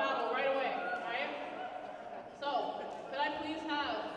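Voices talking in a large echoing hall, the words indistinct.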